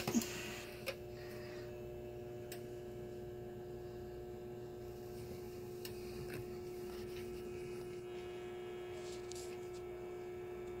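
A steady electrical hum held at one pitch, with a few faint ticks.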